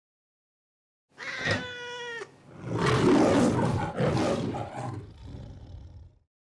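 A domestic cat meowing: one clear, steady-pitched meow about a second in, lasting about a second, followed by a longer, louder, rough and noisy yowl of about two and a half seconds that fades toward the end.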